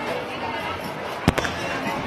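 Steady crowd chatter and bustle, with a single sharp knock just over a second in.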